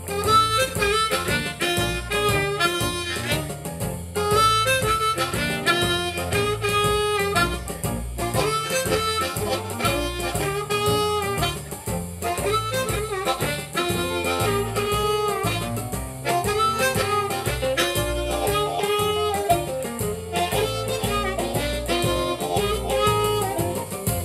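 Blues harp (a diatonic harmonica in B-flat) played in second position over a blues jam track in F, repeating a short improvised lick over the band's steady groove.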